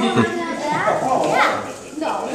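Excited voices of children and adults overlapping, with rising exclamations.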